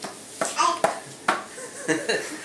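A toddler's brief vocal sounds, with two sharp taps on a clear plastic food container in between.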